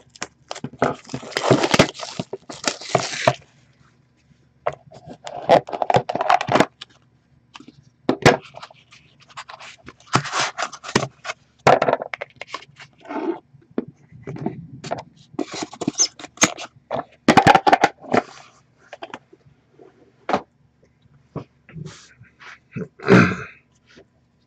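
A cardboard Upper Deck The Cup hockey card box being opened by hand and its cards slid out: irregular scraping and rustling, with sharp clicks and taps between short pauses.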